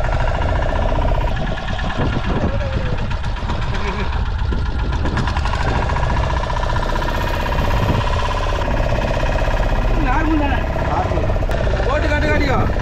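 A fishing boat's outboard motor running steadily under way, with a fine, even firing beat. A man's voice comes in briefly near the end.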